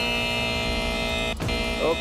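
TV talk show's theme music sting: a held chord that cuts off suddenly about a second and a half in.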